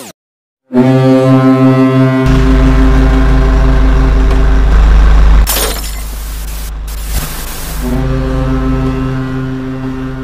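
A deep, steady ship's horn sounding as an intro sound effect, with a heavy low rumble beneath it from about two seconds in. About halfway through there is a loud hissing burst, and then the horn sounds again near the end.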